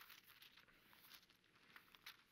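Near silence with faint paper rustling: pages of a Bible being leafed through at a lectern.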